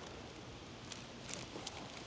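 Faint rustling and a few light ticks of a bundle of insulated electrical wires sliding by hand into a PVC conduit as it is pulled through.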